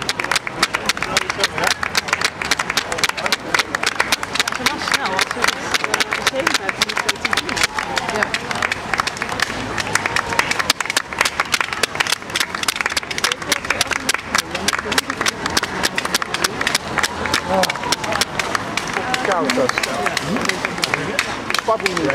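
A dense pack of marathon runners going past close by: a fast, continuous patter of running shoes slapping the road, mixed with spectators' chatter and clapping.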